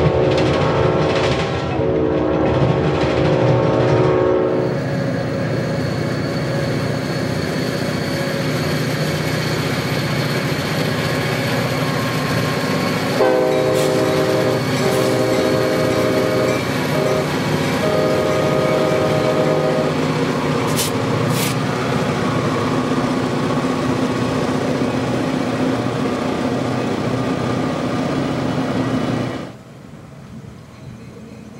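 Freight train diesel locomotive horn sounding a multi-note chord: two blasts in the first few seconds, then three longer blasts about halfway through. Under the horn, freight cars and locomotives run on the rails with a steady rumble and wheel noise. The sound drops off just before the end.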